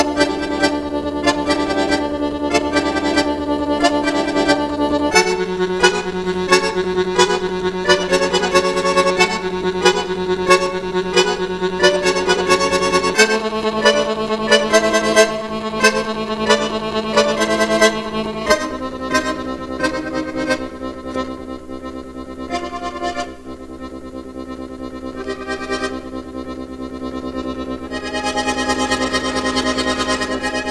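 Chromatic button accordion played solo: quick detached notes and chords over sustained bass notes that shift every several seconds. About two-thirds of the way in the playing drops to a quieter, sparser passage, then swells again near the end.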